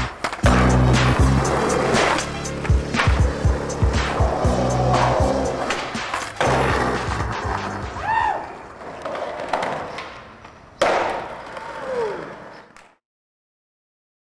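Hip-hop music with a heavy bass beat, over which skateboard pops and clacks sound; the music stops about six seconds in. After it come raw skateboard sounds: wheels rolling on asphalt, board clacks, and a loud slap of a landing about eleven seconds in. The sound cuts to silence near the end.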